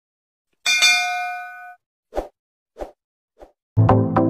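Subscribe-animation sound effects: a bright bell-like ding that rings out and fades over about a second, followed by three short soft clicks. Music with a beat starts just before the end.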